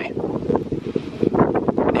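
Wind buffeting the phone's microphone: a dense, rumbling gust noise.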